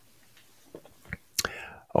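A few faint clicks and one sharp tap from a glass being gripped and lifted off a table in a man's mouth, over quiet room tone, with a short hiss of breath just before he speaks.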